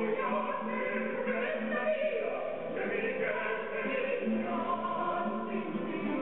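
Operatic soprano and baritone singing a zarzuela duet, accompanied by Spanish guitar.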